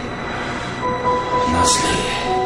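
Suspenseful film score over a noisy rumble, with sustained tones coming in about a second in and a brief hiss near the end.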